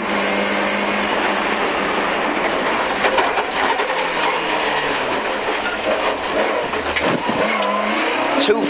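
Rally car's engine and road noise heard from inside the cabin at speed, loud and steady, the engine note shifting as the car threads a hay-bale chicane.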